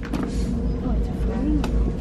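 Faint voices talking quietly over a steady low rumble and a thin steady hum. There is one light click near the end.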